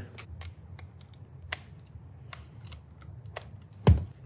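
Scattered light clicks and taps from a cordless hair clipper being handled and turned over, its housing and blade knocking lightly, with one louder low thump near the end.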